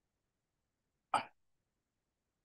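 A single short, sharp mouth or breath sound from a man speaking close into a handheld microphone, a little over a second in, between pauses in his answer; the rest is silent.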